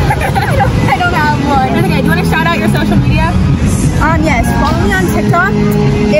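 Girls' voices talking and laughing, with steady low background noise underneath.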